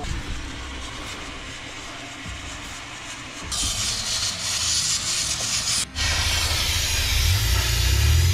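Steam and coolant hissing out of a holed radiator hose on an overheated off-road 4x4, much louder once the bonnet is lifted, about three and a half seconds in. A low rumble runs under the hiss in the second half.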